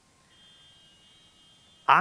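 A quiet pause with a faint, steady high-pitched whine. A man's voice comes back loud near the end.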